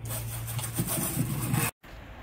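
Hand scrubbing of a Scamp travel trailer's fibreglass shell: a rough, irregular rubbing that cuts off suddenly near the end.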